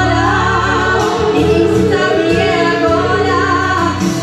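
Two women singing a gospel hymn together through handheld microphones and a PA, over a steady instrumental backing with sustained low notes.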